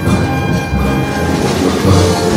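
Live wind-band music: sustained chords over a low, pulsing bass.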